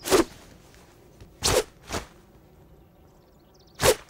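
Four short, sharp whoosh sound effects, each a fraction of a second long. One comes right at the start, two close together about a second and a half in, and one just before the end.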